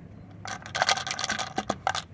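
Dried star anise pods pushed through the narrow neck of a plastic bottle: a dry scraping and crackling of pod against plastic, starting about half a second in and lasting about a second and a half.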